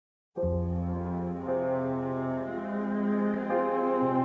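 Orchestral film-score music: sustained low chords begin just after a brief silence and shift to a new chord about every second.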